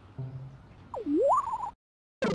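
A whistle-like sound effect: one clear tone that swoops down and back up, then warbles briefly at the top before cutting off suddenly.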